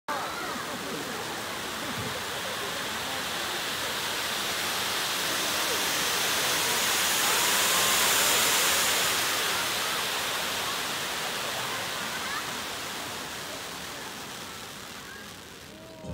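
Stage spark fountains hissing steadily. The hiss swells to its loudest about halfway through and fades away near the end as the fountains die down.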